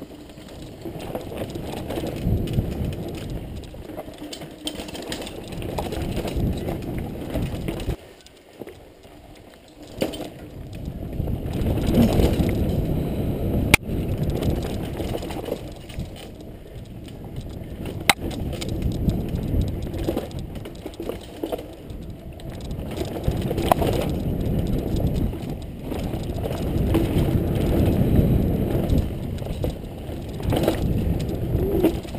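Mountain bike being ridden over a dirt and leaf-litter trail: uneven tyre rumble and the bike rattling over the ground, easing off briefly about a third of the way in. Two sharp clicks from the bike come a few seconds apart around the middle.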